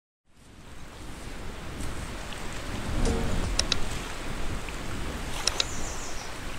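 Steady rushing sound of waves washing on a shore, fading in from silence over the first second, with a few short high-pitched sounds about halfway through and again near the end.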